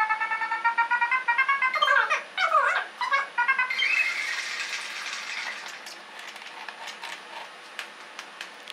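Synthetic electronic tones: a steady chord pulsing rapidly, then tones gliding down and back up, then a hiss that slowly fades away.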